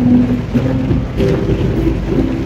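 A woman singing held notes softly to an acoustic guitar, over a steady low drumming of heavy rain on the car roof heard from inside the cabin.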